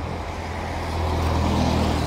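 Street traffic: car engines and tyres on a wet road, a steady low rumble that grows a little louder toward the end as a vehicle approaches.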